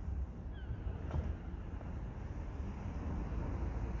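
Wind buffeting a phone's microphone outdoors: an uneven low rumble.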